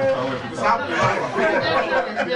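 Several men's voices talking over one another in a room, with no single clear speaker.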